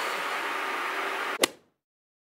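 Steady hiss of room noise, ending in one sharp click about a second and a half in, followed by dead silence.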